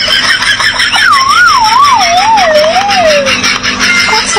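Comic sound effect: a wavering tone that slides slowly down in pitch over about two seconds, over steady background noise.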